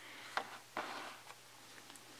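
Faint handling sounds from a hard plastic Grossery Gang Yuck Bar toy case turned in the hands: a light click about half a second in, then a short soft rustle just before a second in.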